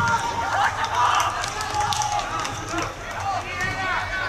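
Men's voices shouting and calling out on a football pitch, over steady outdoor background noise.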